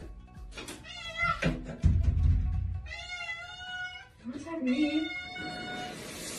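Cat meowing several times, with a long drawn-out meow about three seconds in. A low thump comes shortly before the long meow.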